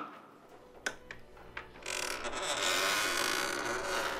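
Light knocks on a wooden dresser, then from about two seconds in a long scraping rustle that swells and fades as things are handled in it.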